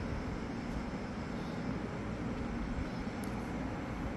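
Steady low background rumble, with one faint click about three seconds in.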